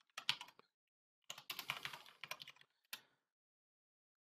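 Faint typing on a computer keyboard: a few keystrokes at the start, a quicker run of keystrokes lasting about a second, then a single last key press.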